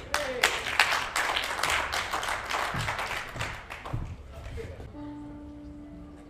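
Audience applause, a dense patter of many hands clapping that thins and fades away about five seconds in. As it dies, one steady sustained note is held.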